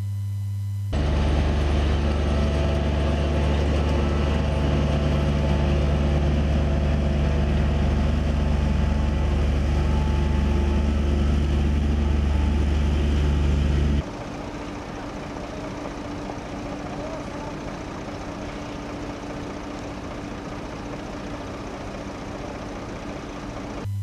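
Heavy road-paving machinery (a road roller and an asphalt paver laying fresh hot asphalt) running with a loud, steady, low diesel engine drone. About 14 seconds in, the sound drops abruptly to a quieter, steady machine running with a higher hum.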